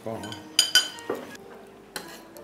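Tableware clinking on a dining table: two quick, ringing clinks a little over half a second in, and a lighter click near the end.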